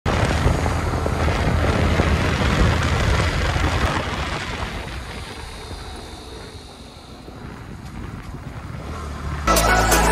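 Yamaha R15 V3 sport motorcycle riding at speed, wind rushing over the microphone with the engine underneath; the sound fades down through the middle and swells again. Electronic music with a heavy beat starts suddenly about half a second before the end.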